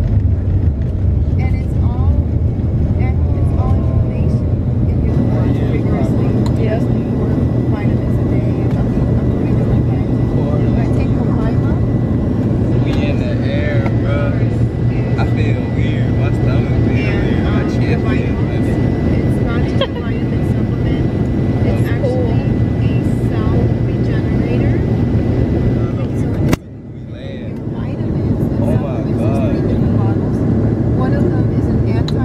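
Steady low engine and air noise inside an airliner cabin during the takeoff roll and climb, with faint voices in the middle. Near the end the noise drops suddenly and then builds back up.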